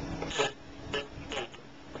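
Small PC cooling fan running slowly on about three volts from a cell phone charger, a faint steady hum. Three short rasping noises sound over it.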